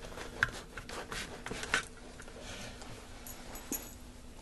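Crusty loaf of bread being split in two by hand: a run of crackles and snaps from the crust, thickest in the first two seconds, with a few more near the end.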